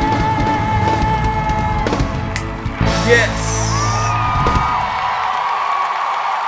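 A female singer holds a long, high note with vibrato over a full live band at the climax of a power ballad. The band hits a final accent, and about four and a half seconds in the band's low end drops out, leaving a high held tone over crowd noise. A man shouts "Yes!" about three seconds in.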